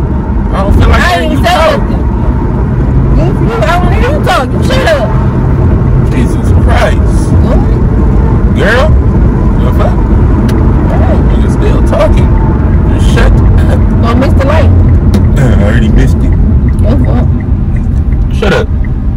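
Steady low road and engine rumble inside a moving car's cabin, with voices talking over it on and off.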